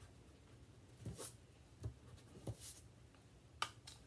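Faint, brief swishes of a pencil eraser rubbing out pencil marks on paper, a few separate strokes, with a sharp click near the end.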